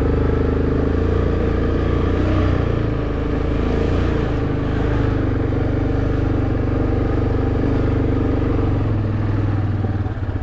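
Four-wheeler (ATV) engine running steadily as the quad is ridden along a muddy dirt trail.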